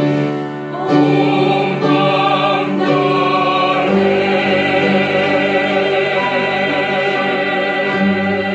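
A small mixed choir of men and women singing a worship hymn in held chords, with piano accompaniment; the harmony shifts to a new chord about halfway through.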